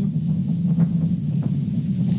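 Falcon Heavy rocket's 27 Merlin engines in flight, heard as a steady low rumble.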